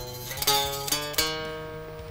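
Chapman ML-1 Pro Modern baritone guitar with single notes picked one after another, each ringing on and fading. The buzz on the notes comes from frets that are not properly levelled, with high spots on the fretboard.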